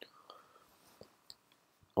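A quiet pause between spoken phrases, with a few faint short mouth clicks and a soft breath from the narrator close to the microphone.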